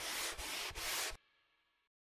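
A sponge wiping across a chalkboard: three quick rubbing strokes in a row, stopping abruptly about a second in.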